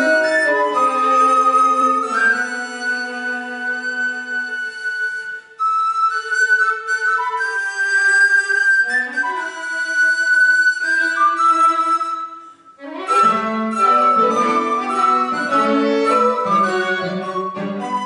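Recorder with a string quartet playing chamber music. Long held notes with the recorder's line on top, a brief drop near the two-thirds mark, then a busier, fuller passage with low cello notes from about thirteen seconds in.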